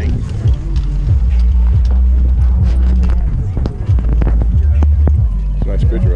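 Heavy, steady wind rumble on a small camera's microphone, with scattered knocks and rustles from handling and from people brushing close past it, over voices in the background.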